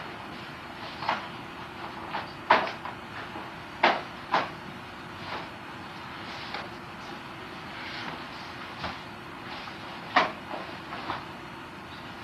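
Sharp swishes and snaps of a wooden bo staff swung and stopped through a kata, coming in irregular bursts, with the loudest a few seconds in and another near the end. A low steady hum runs underneath.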